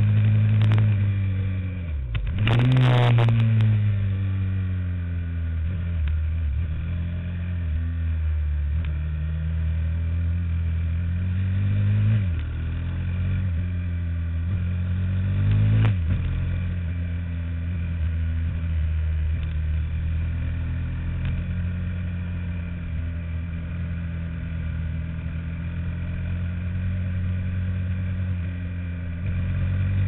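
Racing kart engine heard onboard while lapping a circuit, running hard at a steady pitch. It dips and sweeps up in revs about two to three seconds in, with a short burst of rushing noise. It climbs and then drops sharply twice, near twelve and sixteen seconds.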